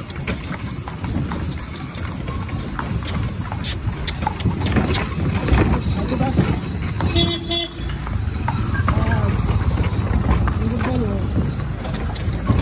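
A cart horse's hooves clip-clopping at a walk on a packed-dirt street as it pulls a cart. A short vehicle horn toot sounds about seven seconds in, and voices are heard.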